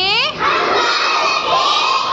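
A class of young children shouting together in unison: a short falling syllable, then one long held shout from about half a second in.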